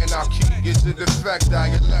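Hip-hop music with rapped vocals over a beat. The level dips briefly about a second in, and from about one and a half seconds in a different beat and bassline carry on with rapping, as one snippet in the mix gives way to the next.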